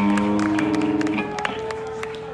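Live band holding sustained chords that narrow to a single held note about a second and a half in, with scattered audience clapping.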